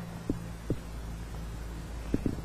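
Steady low hum with three soft, short low thumps, picked up by a microphone clipped to the chest of a person lying still.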